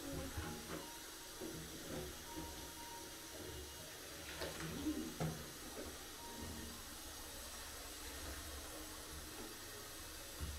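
Faint sloshing of bathwater as a child plays in a bubble bath, with a few light knocks around the middle.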